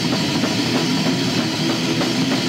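Death metal band playing live: rapid drumming under heavy guitar, a dense, loud and unbroken wall of sound.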